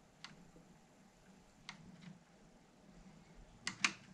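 Light plastic clicks of a screwdriver levering at the reset-switch cover on a Sinclair QL case: a faint tick at about a quarter second, another at under two seconds, then two sharper clicks close together near the end.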